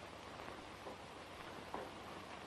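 Faint, steady hiss of an old optical film soundtrack, with a faint short click late on.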